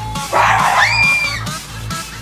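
A person's sudden high scream starting about a third of a second in, rough at first, then held on one high pitch for about a second, over background electronic dance music with a steady beat.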